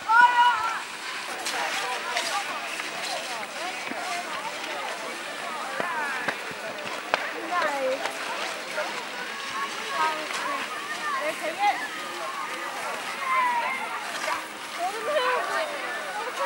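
Indistinct chatter and calls from a group of children's voices, overlapping and high-pitched, with no clear words.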